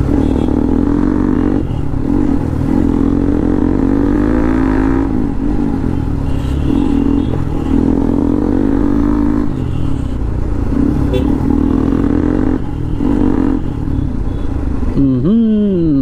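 Sport motorcycle engine running while riding at low speed in traffic, its pitch rising and falling gently with the throttle over a steady low rumble.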